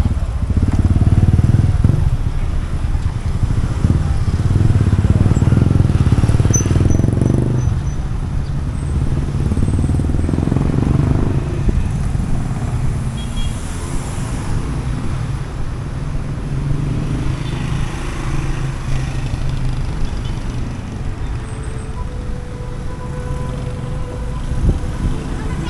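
Road traffic passing close by: cars and motorcycles going by one after another, with several louder swells in the first dozen seconds as vehicles pass near, then a steadier, lower hum of traffic.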